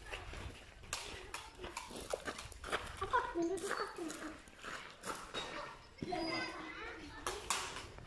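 Irregular sharp, hollow knocks of balls struck with a wooden bat and landing on the concrete court, several in a row, with children's voices calling in between.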